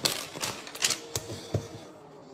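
A pen and paper being handled on a hard tabletop: a quick, uneven series of sharp clicks and taps, about five in two seconds.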